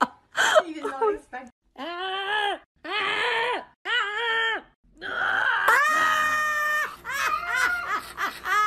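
A person's voice making a whining, yawn-like noise in time with a cat's yawn: three short wails that rise and fall, then one longer, higher wail about five seconds in.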